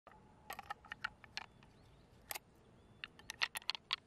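Irregular small, sharp clicks as a knife and fingers work through the flesh and shell of an opened large pearl mussel, with a quick run of clicks close together near the end.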